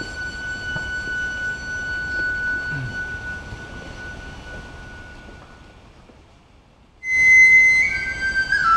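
A Japanese bamboo flute holding one long high note that slowly fades away, then after a short lull a new loud phrase starts about seven seconds in and steps down in pitch.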